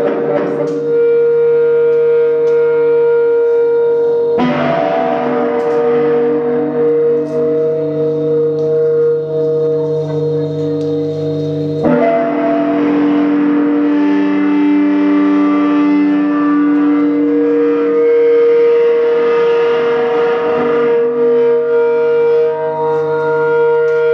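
Electric guitar played through an amplifier with effects, holding a loud, steady drone of sustained notes that shifts abruptly to a new chord about four seconds in and again about twelve seconds in.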